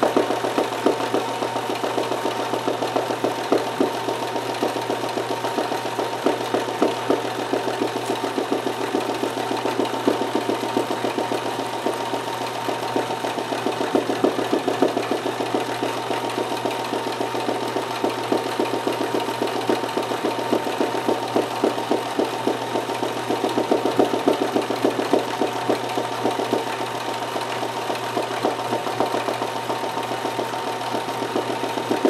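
Kenmore 158.1914 sewing machine running steadily at speed while stitching free-motion zigzag: a rapid, even patter of needle strokes over a constant motor hum.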